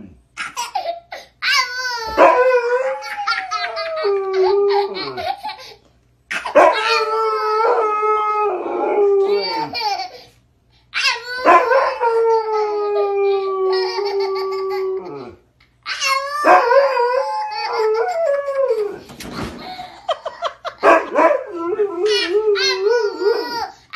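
Siberian husky howling and "talking" in long, wavering woo-woo calls, trading back and forth with a toddler's shrieks and laughter. The calls come in four bouts, each a few seconds long, with short silent pauses between them.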